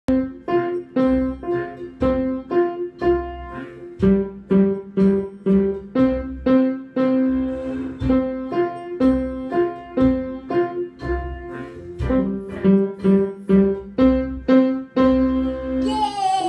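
Upright piano playing a simple beginner exercise in two-note chords a fourth apart, struck in a steady beat of about two a second.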